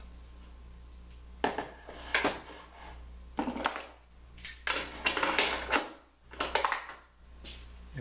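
Metal clinks and clatter as aluminium extrusion and metal hardware are handled and shifted on a drill press table. There are several separate knocks, with a longer scraping rattle about halfway through.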